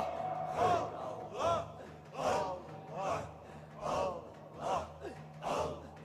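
Group of men chanting a Qadiri devran dhikr in unison: a forceful voiced breath-chant repeated in a steady rhythm a little more than once a second, over a low steady hum.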